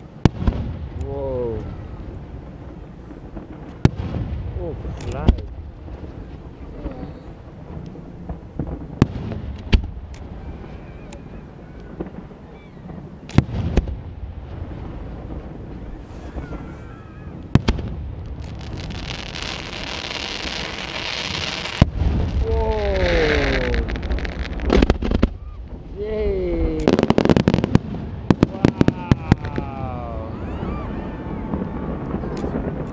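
Fireworks display: aerial shells bursting one after another with sharp bangs and a low rumble between them. A dense crackling hiss rises about two-thirds of the way through, and a rapid volley of bangs comes near the end.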